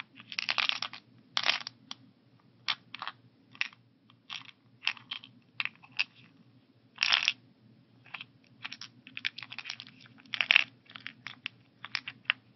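A plastic seven-day AM/PM pill organizer being handled: irregular clicks and taps of fingers and nails on its lids, with a few longer rattles of pills shifting inside the compartments, the loudest near the end.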